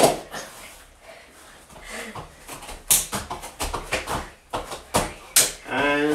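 Scattered thumps and slaps of children's hands and feet landing on a floor mat during star jumps and press-ups: a sharp one right at the start, then irregular knocks, with louder ones about three seconds in and again about five seconds in.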